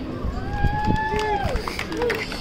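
A high-pitched voice calls out one long held note for about a second, dropping in pitch at the end.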